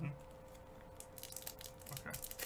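Faint crinkling of a torn foil baseball-card pack wrapper as the pack is opened from the bottom and the cards worked out, with a few light clicks and crackles, most of them from about a second in.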